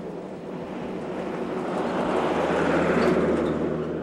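A truck driving past: engine and tyre noise swelling to a peak about three seconds in, then fading as it goes by.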